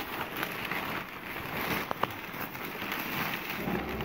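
Black plastic garbage bag rustling and crinkling as hands dig through it and pull an item out, with a couple of sharp clicks about two seconds in.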